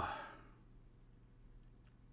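A man's short voiced "oh" trailing off into a breathy exhale in the first half second, then near silence.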